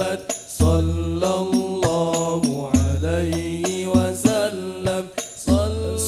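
Al-Banjari sholawat: several men's voices singing a devotional chant through a PA, over terbang frame drums giving sharp strikes and deep bass beats about every second or so.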